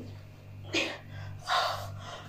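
A woman's breathy gasps of effort, a short one about a second in and a longer one soon after, as she strains to crush a watermelon between her thighs.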